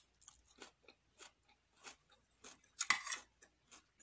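A person chewing a mouthful of tuna and raw vegetables close to the microphone: short chewing sounds about every half second, with a louder, longer burst about three seconds in.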